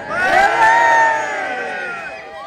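A crowd of voices cheering together in one long, drawn-out shout that fades near the end, the traditional 'hip hip' cheering of the Clavie fire festival.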